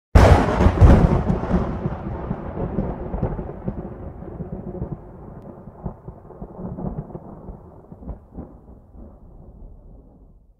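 A thunderclap: a sudden loud crack with crackling, then a long rolling rumble that slowly fades, with a few smaller cracks along the way.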